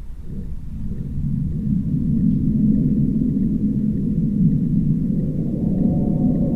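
A low rumbling drone from a horror film's sound design. It swells in over the first couple of seconds and then holds steady, with faint held tones coming in near the end.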